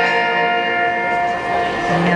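Live band music: a long held note or chord ringing steadily between sung lines, fading near the end.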